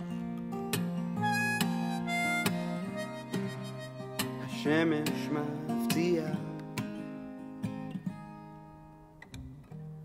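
Instrumental break of a folk song: a steel-string Yamaha acoustic guitar picked under a harmonica melody, with bent harmonica notes about halfway through. The music thins out and grows quieter near the end.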